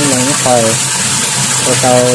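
A thin stream of water running from a wall tap into a large plastic tub, giving a steady splashing hiss. A voice is louder than the water throughout.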